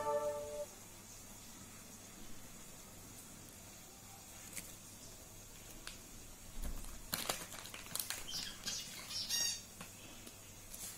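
A quiet room with a scatter of faint clicks and rustles from handling in the second half, ending with a short high squeak.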